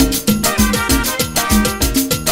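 Live cumbia band playing a steady dance beat: drum kit, congas and timbales over bass, with pitched melodic instruments above.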